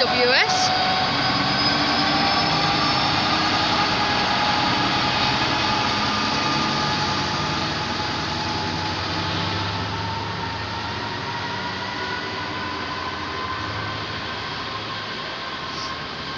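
Container freight train rolling past behind an EWS Class 66 diesel locomotive. The low hum of the locomotive's two-stroke diesel engine fades as it pulls away, under a continuous rumble of wagon wheels on the rails with thin, steady high whines. The whole sound slowly dies down.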